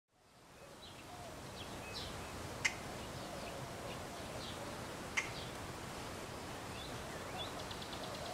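Scattered short bird chirps over a steady outdoor background hiss, with two sharp clicks about two and a half and five seconds in.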